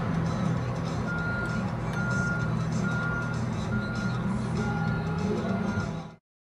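A vehicle's backup alarm beeping six times, about once a second, starting about a second in, over the low hum of an engine running.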